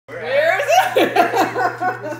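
Loud laughter, in quick bursts that rise and fall in pitch, over a steady low hum.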